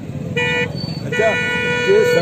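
A vehicle horn honks twice: a short toot, then a longer one of about a second, steady in pitch, over voices.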